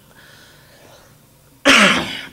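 After a short quiet pause, a man coughs once, loudly and briefly, near the end.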